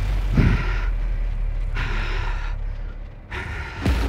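Heavy breathing: three loud exhalations about a second and a half apart, a cyclist catching his breath at the end of a hard interval, over a low steady hum.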